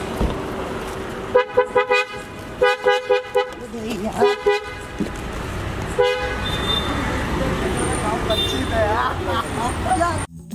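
Car horn tooting in quick groups of short beeps, with a last single toot about six seconds in. Street and engine noise underneath, with voices calling near the end.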